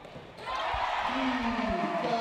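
Women's basketball game in a sports hall: a steady crowd hubbub starts about half a second in, with a few thuds of the ball bouncing on the court. From about a second in, a voice calls out over it.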